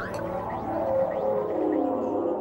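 Psytrance electronic music in a beatless passage: layered sustained synthesizer tones, one of them gliding slowly downward in pitch, at the changeover between two tracks of a continuous mix.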